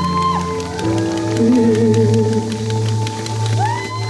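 Live band music from a slow R&B ballad: sustained keyboard chords underneath, with a male singer holding long notes that waver with vibrato, and sliding high tones near the start and end.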